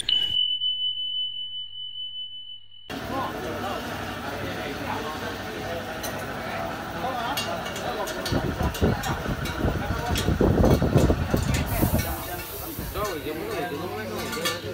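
A steady high electronic tone over a low hum for about three seconds, cutting off abruptly. It gives way to workshop background noise: indistinct voices, scattered clicks and knocks, and a low rumble swelling about two-thirds of the way in.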